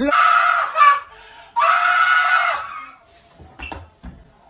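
A person screaming: two long, high screams, the second starting about a second and a half in, then a short knock near the end.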